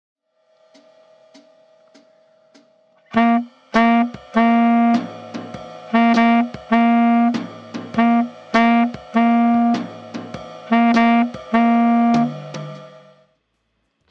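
Saxophone playing a syncopated jazz rhythm exercise on one pitch, short tongued notes and held accented ones, played twice through over a backing track with a drum beat. A quiet count-in of faint clicks comes first, and the sax enters about three seconds in.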